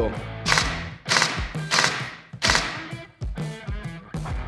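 Airsoft AEG with a V2 gearbox, run by a Perun V2 Optical MOSFET, cycling in short mechanical bursts, about five in four seconds, each a sharp clatter that dies away quickly: test-firing of the three-round burst mode just programmed. Guitar background music plays underneath.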